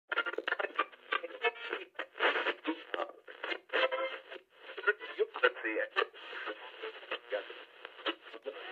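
A thin, radio-like voice in quick, choppy fragments.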